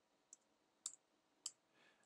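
Three faint computer keyboard keystrokes, each a short click, spaced roughly half a second apart.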